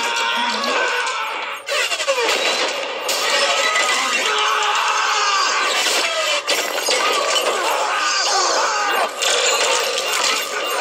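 Action-film soundtrack played on a screen and picked up off its speaker: glass shattering and debris crashing, shouting voices, and orchestral score, all mixed together.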